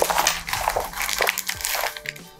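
Paper delivery bag being handled and crumpled, giving a run of irregular crinkling rustles.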